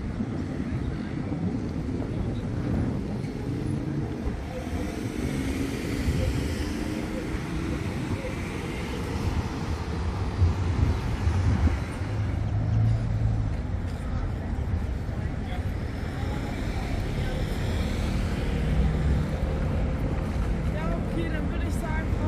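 Road traffic on a city street, cars passing in a steady low rumble, with indistinct voices of people nearby.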